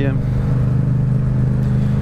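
Yamaha MT-07's parallel-twin engine, fitted with an Akrapovič exhaust, running steadily at cruising speed: a constant low drone that holds its pitch.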